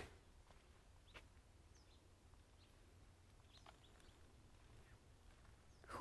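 Near silence with a few faint, short bird chirps, spaced about a second apart.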